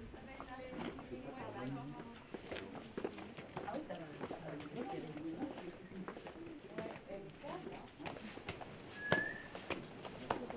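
Indistinct voices of people talking, with footsteps and scuffs on stone paving. A sharper click and a brief high chirp come about nine seconds in.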